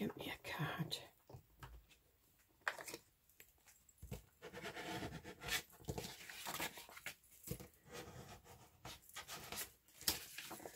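Paper handling: irregular rustles, light taps and rubbing as folded paper is pressed down and worked with a small card.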